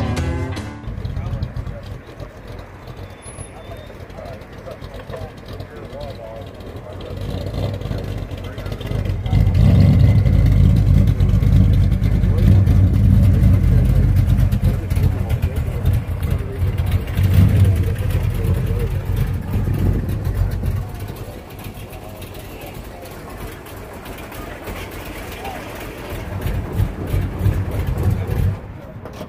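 A classic 1957 Chevrolet's engine running with a low rumble, loudest for about twelve seconds in the middle and swelling again near the end, with people talking around it.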